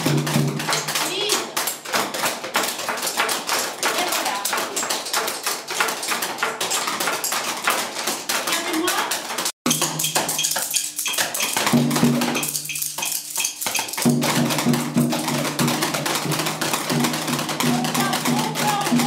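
Many wooden drumsticks clicking and tapping together in a rhythm, dense and fast, with children's voices chanting along. The sound cuts out for an instant a little past halfway.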